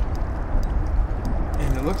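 Steady low rumble of wind and rushing river water outdoors on a boat, while a hooked fish pulls a spinning rod bent over the current. A man's voice starts near the end.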